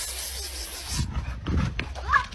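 A large dog giving two short, low vocal sounds, about a second in and again halfway through the second second, over a steady low rumble and hiss.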